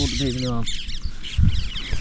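Small birds chirping repeatedly in the open air. In the first half-second a short drawn-out voiced sound trails off, and a dull thump comes about a second and a half in.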